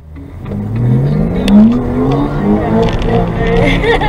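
Sports car engine under hard acceleration, heard from inside the cabin: the revs climb to a peak, drop back at a gear change and climb again. Voices come in near the end.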